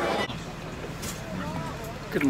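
Gym crowd noise cuts off sharply just after the start, giving way to the steady low rumble of a school bus interior with faint voices.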